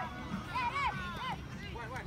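Children's high-pitched voices shouting and calling out, over a background of crowd chatter.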